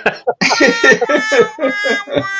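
A man laughing in short, quick bursts.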